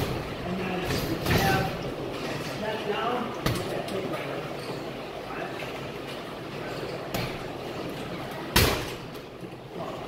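A few sharp thuds of strikes landing on a heavy punching bag, the loudest a little before the end, with a low voice talking in between.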